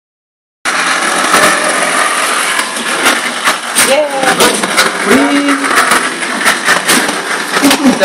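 Small sumo robot's electric gear motors running with a loud, steady whirr, with many knocks and clatter as the robot bumps and pushes against a cardboard box. Voices speak over it.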